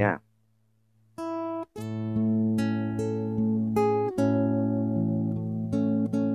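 Nylon-string guitar picking the melody of the song's opening phrase over an A major chord, single notes ringing out over a sustained low A bass. It starts about a second in, after a short silence, with a new note roughly every half second.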